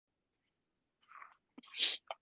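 A man's short sneeze into his hand near the end, one brief noisy burst heard over a call microphone.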